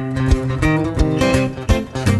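Two acoustic guitars playing an instrumental folk/bluegrass intro: quick picked melody notes over a steady, regular bass beat.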